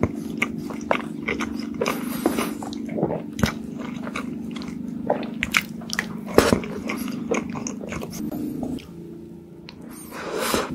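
Close-up eating sounds of a mouthful of soft cream cake: wet mouth clicks, lip smacks and chewing at irregular moments. Underneath is a steady low hum, which drops away near the end.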